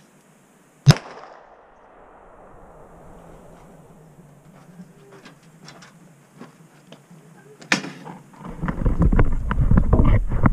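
A single handgun shot about a second in, sharp and loud with a short echo trailing off. Faint clicks follow, and near the end a loud, low rumbling of handling noise as the camera is picked up.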